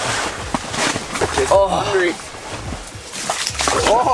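Water sloshing and splashing in an ice-fishing hole as a lake trout is handled back into it, with a short wordless voice in the middle.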